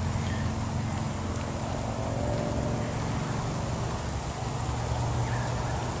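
A steady, low mechanical drone, such as a motor running, with a few held low tones that hardly change.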